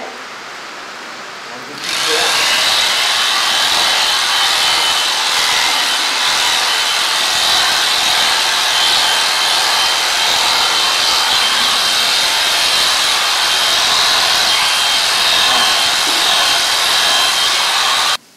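Sure-Clip electric horse clippers running and cutting a horse's coat with a steady buzz and a thin high whine. The sound grows much louder about two seconds in.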